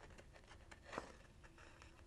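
Near silence, with a few faint ticks of paper being handled by fingers, the clearest about a second in.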